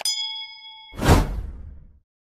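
Subscribe-animation sound effects: a mouse-click tick and then a bell-like notification ding that rings steadily for about a second. Then comes a sudden loud whoosh hit that falls away from high to low and fades over the next second.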